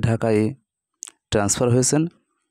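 Speech only: a narrator reading aloud, with two phrases broken by a short pause and a brief click about a second in.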